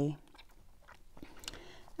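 A spoken word trails off, then a pause of low room tone with a few faint, short clicks.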